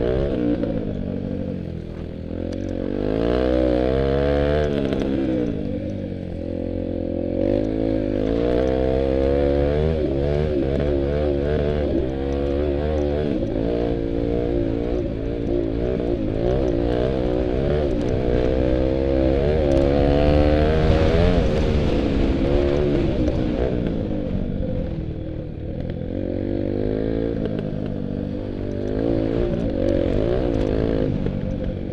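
Dirt bike engine revving up and down as it rides a trail, its pitch rising and dropping again every second or two as the throttle opens and the gears change.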